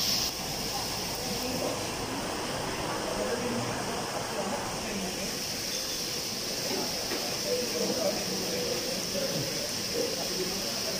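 A steady hiss with faint, indistinct voices murmuring in the background.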